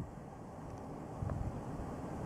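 Faint, steady outdoor background noise with low rumble, like light wind on the microphone, and a couple of tiny clicks about a second in.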